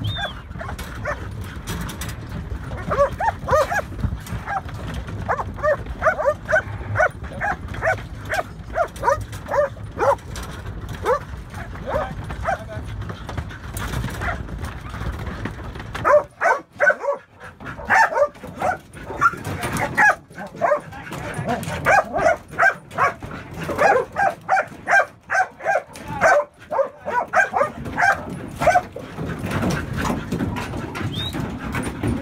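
Working sheepdog barking over and over in short barks, two or three a second, as it works sheep on a stock truck deck. The barking starts a few seconds in, pauses briefly about halfway, then picks up again, over a low rumble that stops about halfway.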